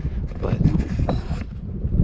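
Strong wind buffeting the camera microphone: a loud, gusting low rumble.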